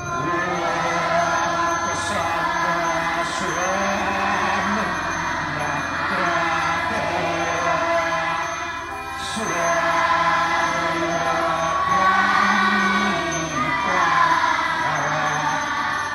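Voices chanting a Balinese Hindu prayer in long held notes that step up and down in pitch, with a short pause for breath about halfway through.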